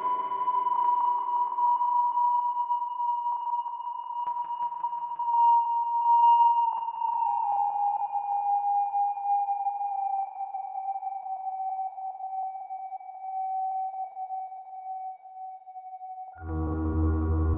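Eurorack modular synthesizer, Doepfer A-100 analog modules run through a MakeNoise Mimeophon, holding a single sustained tone that slowly glides down in pitch, with a fainter, higher tone falling along with it. Lower notes die away in the first second or two.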